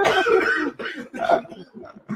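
A person clearing their throat with a cough, loud at first and dying away within about a second as laughter ends; faint voice sounds follow.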